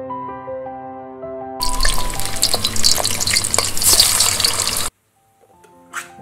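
Vegan burger patties sizzling in a hot oven: a loud hiss with small pops that starts suddenly just under two seconds in and cuts off abruptly about five seconds in, over soft background music.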